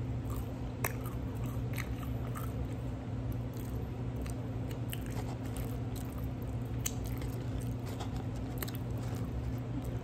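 Close-up chewing of a loaded cheeseburger, with many small scattered mouth clicks and light crunches, over a steady low hum.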